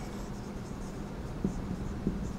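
Marker pen writing on a whiteboard: the tip faintly rubbing across the board as letters are written.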